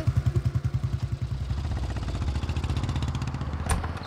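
Motorcycle engine running under way, a fast even thumping that smooths into a steadier note after about a second and a half. A single sharp click near the end.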